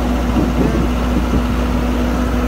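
Engine of a large machine running steadily: a constant low drone with a steady hum.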